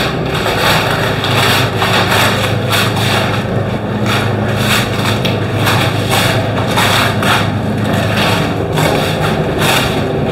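A steady low machine hum under a rushing air noise that swells and fades again and again, from the compressed-air spray-painting equipment in the booth.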